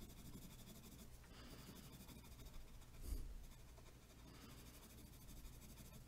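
Faint scratching of a black colored pencil shading on drawing paper, with one brief soft knock about three seconds in.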